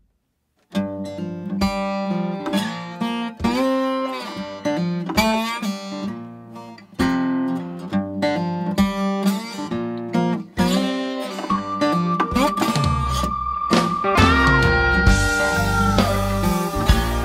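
Recorded guitar music: a melody with bent, wavering notes over chords. Bass and drums come in near the end under a long held high note.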